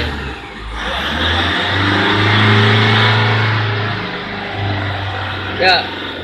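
Toyota Fortuner's turbodiesel engine revved once from idle: it climbs from about a second in, holds near the top for a second or two, then falls back toward idle.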